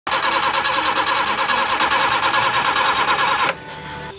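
Toyota Corolla KE30's four-cylinder engine, fed by a bank of four motorcycle carburettors, running loudly with a fast, even pulse; the sound cuts off abruptly about three and a half seconds in.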